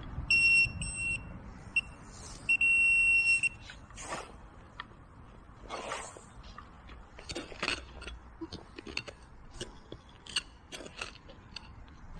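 A handheld metal detecting pinpointer beeps with a high pitched electronic tone: two short beeps, a brief blip, then a steady tone of about a second, signalling metal in the dug soil. After that come scattered rustles and small scrapes of soil being handled.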